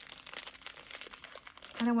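Candy wrapper crinkling as it is unwrapped from a small perfume sample vial: a quick, irregular run of crackles that gives way to a woman's voice near the end.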